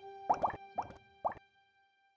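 Three short, bubbly 'bloop' sound effects, each sweeping up in pitch, about half a second apart, over the held notes of background music fading away.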